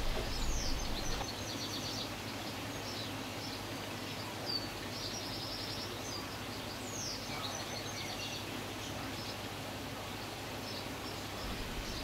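Songbirds chirping faintly over a steady background hiss, with short falling chirps near the start and about seven seconds in, and a quick trill about five seconds in.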